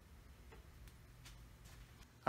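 Near silence with four faint, evenly spaced ticks, about two and a half a second, over a low steady hum.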